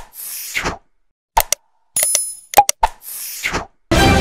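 Subscribe-button animation sound effects playing twice in a row: sharp clicks, a bell-like ding and a short whoosh, with the sequence coming round again about every two and a half seconds. Music starts right at the end.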